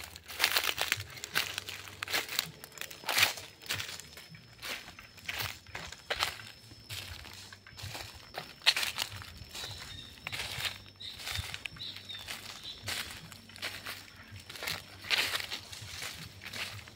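Footsteps crunching and crackling through dry leaf litter and twigs, an irregular series of crisp steps.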